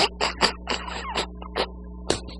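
Stifled laughter: a run of short, breathy, irregular bursts, about three or four a second, over a faint steady electrical hum.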